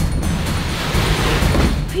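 Tissue paper and a fabric dust bag rustling and crinkling as a heavy wrapped package is dragged up out of a cardboard box, a dense rustle that eases just before the end.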